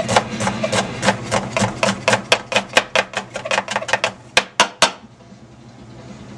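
Chef's knife slicing an onion on a cutting board: quick knocks of the blade on the board, about five or six a second, with a few louder strikes just before it stops about five seconds in.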